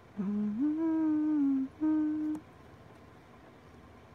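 A woman humming with her mouth closed: a long note that steps up and then slowly sags, followed by a short second note at about two seconds.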